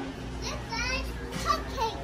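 A young child's high-pitched voice, with two short vocal sounds about a second apart.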